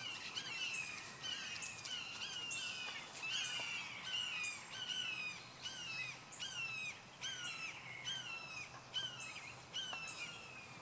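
A bird calling over and over outdoors, short notes that each dip in pitch, repeated about twice a second without a break.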